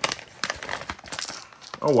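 Foil-lined mystery dice pouch crinkling as it is opened and handled, with a run of sharp little clicks and rustles.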